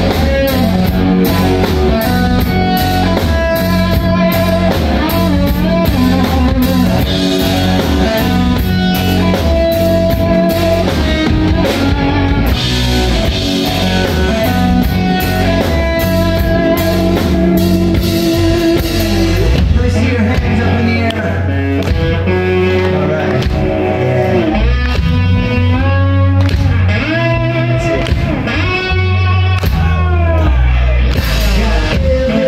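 A rock band playing live in an instrumental stretch: electric guitar riffs over a pounding drum kit and bass. About twenty seconds in the drums drop back and the guitar plays bending notes.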